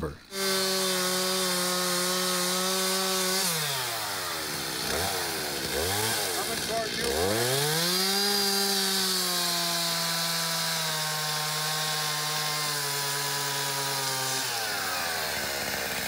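Stihl chainsaw held at high revs for about three seconds, then eased off and blipped a few times. It revs up again and cuts through the trunk at the base of a fir tree, its pitch sagging slowly under the load, and drops away about a second before the end.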